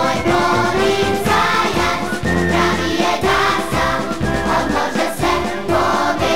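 A choir singing a lively song, accompanied by a marching band of brass and clarinets.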